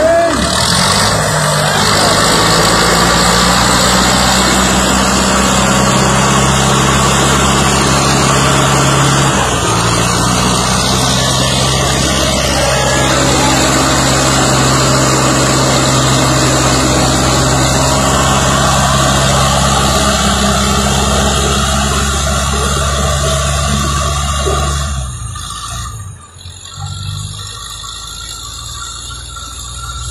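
Diesel engine of a red Romanian-built farm tractor running loud and steady at high revs while straining to pull, its front wheels lifting off the ground; the pitch shifts once about ten seconds in. About 25 seconds in the engine sound falls away sharply.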